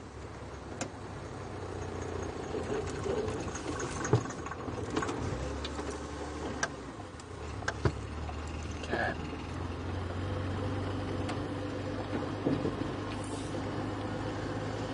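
Engine of an open safari game-drive vehicle running steadily as it drives along a bumpy dirt track. Occasional short knocks and rattles come through over it.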